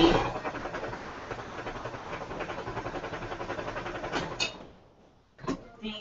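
Electric sewing machine running at a steady, even pace for about four seconds, then stopping. A few light clicks follow near the end.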